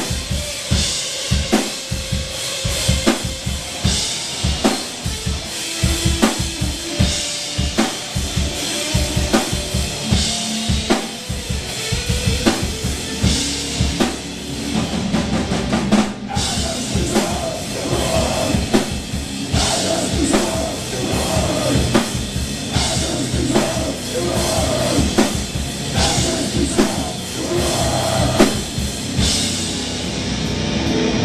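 Live rock band playing: a drum kit with a rapid run of bass-drum hits in the first half, with electric guitars, the sound filling out with more guitar from about halfway on.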